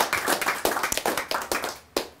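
A small audience applauding by hand, the claps thinning out and fading toward the end, with one last sharp clap.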